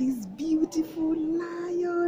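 A child's voice singing one long held note. The pitch wavers at first, then holds steady until just after the end.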